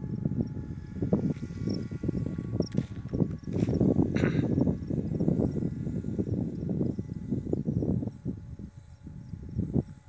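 Gusty wind buffeting the phone's microphone: an uneven, choppy low rumble that swells and drops, easing a little near the end.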